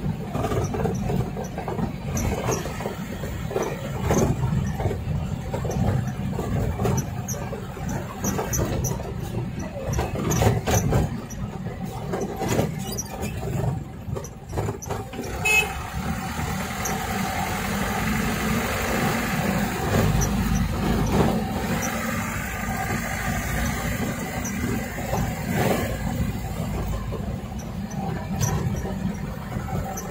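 Dump truck loaded with fill soil, heard from inside its cab while driving: the engine runs steadily under road noise, with frequent knocks and rattles over the first half that settle into smoother running about halfway through.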